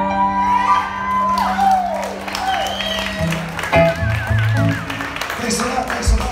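A song's last held chord on keyboard and guitar rings out and stops about three seconds in. Over it and after it come audience cheers and whoops, a wavering whistle and scattered applause.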